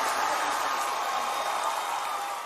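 Audience applause, a steady even clatter of many hands clapping.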